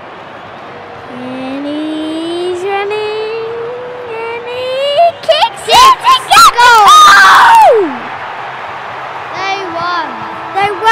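Boys' voices holding a long, slowly rising note, breaking about five seconds in into very loud excited yells as the match-winning goal kick goes through, with stadium crowd noise underneath.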